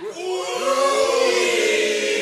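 Several voices holding one long sung chord together, gliding in just after the start and then sustained, choir-like.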